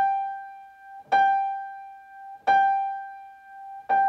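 Grand piano: one note struck firmly again and again, about every 1.3 seconds, each note left to ring and die away before the next. Big, long, repeated notes of the 'chiming' exercise, played with the fingers rather than the thumb.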